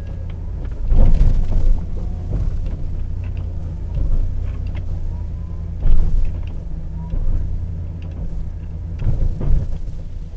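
A pickup-mounted snowplow being worked: its electric-hydraulic pump runs in several bursts, about one, four, six and nine seconds in, as the blade swings and lifts. Under it is the steady low hum of the Ford F-250's idling engine.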